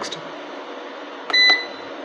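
Solar inverter's keypad giving one short, high beep as a front-panel button is pressed, the key-press confirmation as the menu steps to the next setting, with a sharp click at either end of the beep about a second and a half in.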